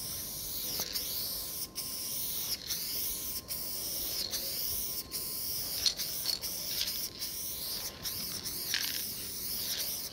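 Aerosol spray-paint can hissing steadily as paint is sprayed in sweeping strokes. The hiss is broken by brief pauses between strokes a little more often than once a second, and its tone shifts with each sweep.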